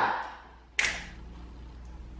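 A single sharp crack less than a second in, as a voice trails off, then quiet room tone with a low steady hum.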